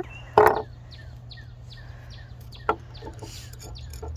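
Birds chirping repeatedly, short downward-sliding calls a couple of times a second, over a steady low hum. A short loud sound comes about half a second in, and a single sharp click a little past the middle.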